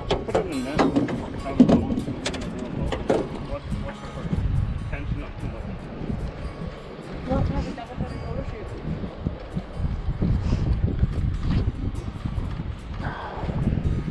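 Spinning reel being cranked against a hooked lake trout, with scattered sharp clicks and knocks and wind rumbling on the microphone.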